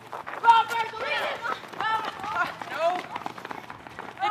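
A group of kids shouting and yelling as they sprint across asphalt, with many running footsteps on the pavement.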